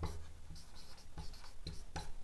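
Marker pen writing on a whiteboard: a series of short, faint strokes.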